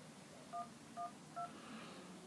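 Three short touch-tone keypad beeps from an iPhone's emergency-call dialer as 1, 1, 2 is keyed, each beep two notes at once, about half a second apart; the third beep sits slightly higher, the tone for the 2 key.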